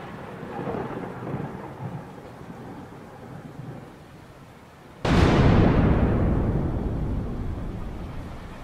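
Thunderstorm sound effect: rain with a rumble of thunder, then a sudden loud thunderclap about five seconds in that slowly dies away.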